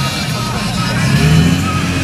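Modified Nissan 240SX's engine running at low revs as the car rolls slowly past, its note rising a little about a second in.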